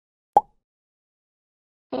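A single short pop about a third of a second in, otherwise dead silence: an edited-in transition sound effect at a cut in a recorded phone call.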